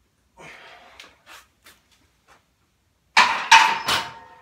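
Hard breathing after a heavy set, then near the end three loud metallic clanks in quick succession that ring on afterwards, like steel gym weights or a barbell striking the rack.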